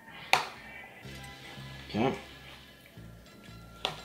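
Metal spoon knocking sharply against a glass mixing bowl twice, about a third of a second in and again near the end, while stirring thick mayonnaise-dressed potato salad, over faint background music.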